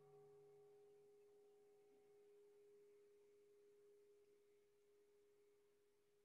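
The ring of a struck meditation bell dying away: one steady tone, very faint, held throughout, while its higher overtones fade out within the first two seconds.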